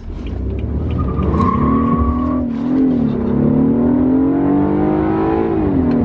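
BMW 328i's turbocharged four-cylinder engine accelerating hard, heard from inside the cabin. The revs climb, dip once about two and a half seconds in at an upshift of the eight-speed automatic, climb again, and ease off near the end. A steady high whine runs over the first couple of seconds.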